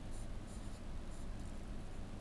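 A few short, faint pen strokes scratching on a writing board as a figure is written, over a steady low room hum.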